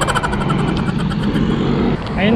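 Roadside traffic, with a motorcycle engine running as it approaches along the road. A rapid run of clicks sounds over it in the first second and a half.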